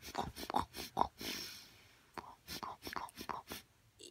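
Quiet mouth sounds: quick lip smacks and tongue clicks, several a second, mixed with whispered breaths, including a longer breathy hiss about a second in.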